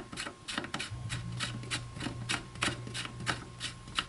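Steel mag plug being threaded by hand into a Kel-Tec KSG shotgun's magazine tube against the tube spring. The threads give a run of small metallic clicks, about three or four a second.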